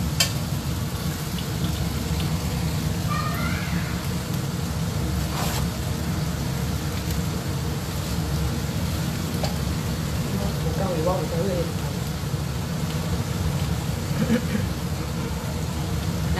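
Prawns sizzling steadily as they pan-fry in hot oil in a wok, over a low, constant hum.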